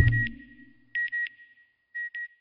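Electronic sound effect for a satellite animation: a low whoosh dies away, then short high-pitched beeps come in pairs about once a second, like a satellite's signal pinging.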